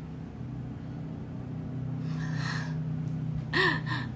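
A person sniffing at cupped hands held to the nose: one breathy sniff about two seconds in, over a steady low hum. A short voiced laugh follows near the end.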